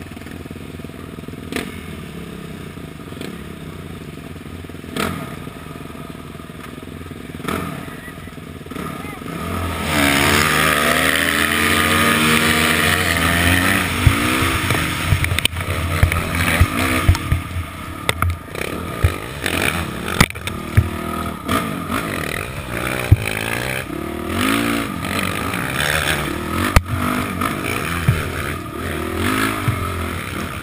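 Dirt bike engine running steadily at the start, then revving hard about ten seconds in as the bike takes off, its pitch climbing. After that the engine revs up and down along a tight dirt trail, with frequent sharp knocks and clatter, heard from a helmet-mounted camera.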